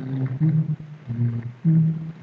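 A man's voice making drawn-out, level-pitched sounds, humming or murmuring to himself, broken by a short pause about one and a half seconds in.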